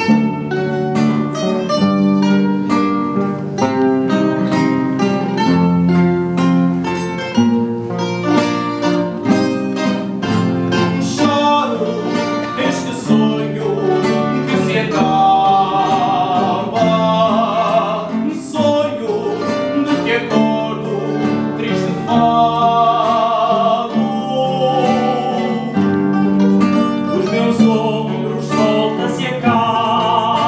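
Coimbra fado: a Portuguese Coimbra guitar plucks the melody over two classical guitars strumming and picking the accompaniment. A man's voice comes in about a third of the way through, singing long notes with a wide vibrato over the guitars.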